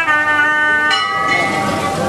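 Instrumental music: a reedy, horn-like wind instrument holding long notes that step to a new pitch a few times.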